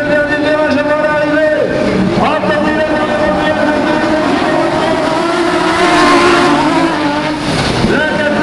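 Several autocross race cars' engines running hard as a pack through a bend, their pitch dropping and then rising again about two seconds in, loudest around six seconds in.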